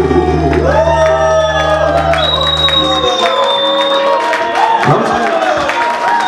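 Live band of keyboard and electric guitar playing the closing notes of a song with a singer, the low bass chord stopping about three seconds in, while the audience cheers and shouts.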